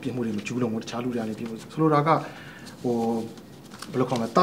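Only speech: a man talking in Burmese, with short pauses between phrases.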